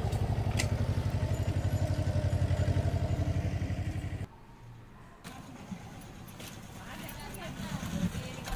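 A small engine running steadily with a rapid, even chug, cut off suddenly about four seconds in; after that only a faint background remains.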